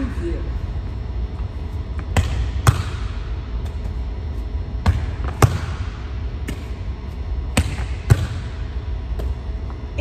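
A volleyball forearm-passed against a gym wall three times. Each pass gives two sharp smacks about half a second apart, the ball off the forearms and then off the wall, over a steady low hum.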